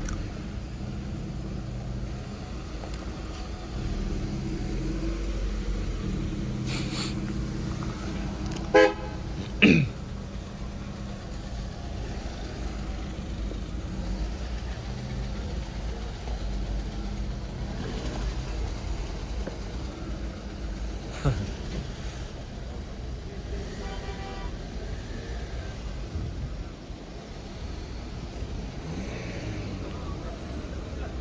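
Car horns toot briefly, twice in quick succession about nine seconds in and once more faintly later. Under them is a steady hum of car engines and distant voices.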